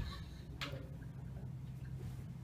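Faint clicking of a stuck interior door's knob and latch being worked by hand, over a low steady room hum.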